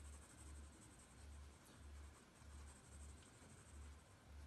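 Faint scratching of a graphite pencil shading on sketchbook paper, going back and forth in a steady rhythm of about two strokes a second.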